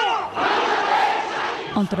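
A large crowd of marchers shouting together in one loud burst of about a second and a half.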